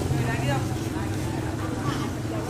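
People talking in a language the Chinese transcript does not capture, over a steady low hum.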